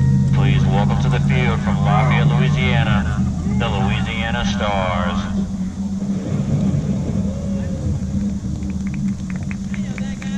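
Several voices talking and calling out for the first five seconds or so, over a steady low engine hum that carries on through the rest, with a few light clicks near the end.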